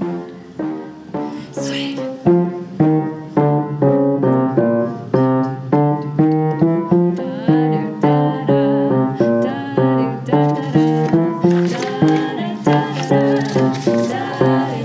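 Plucked double bass solo in a swing jazz recording: a run of separate, sharply struck notes, about two to three a second, each dying away before the next.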